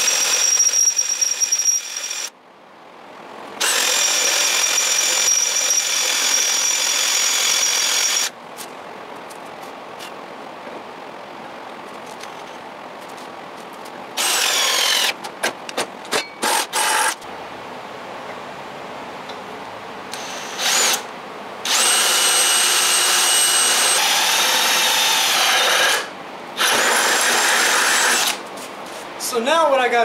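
Cordless drill boring holes through a quarter-inch steel bracket held in a C-clamp. It runs in several bursts, some a few seconds long and some short, with pauses between them. The motor's high whine drops in pitch at times as the bit bites into the steel.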